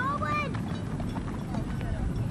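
A child's high-pitched shout or call in the first half second, over a low steady outdoor rumble; the rest is only that rumble with a few faint distant voice fragments.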